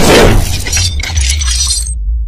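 Cinematic intro sound effects: a loud impact hit followed by glassy shattering and tinkling that dies away over a steady low bass. The high end cuts off abruptly near the end.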